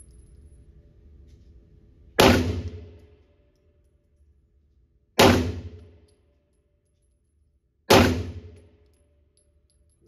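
Three 9mm pistol shots from a Tisas 1911 Night Stalker, about three seconds apart, each ringing off in the echo of an indoor range.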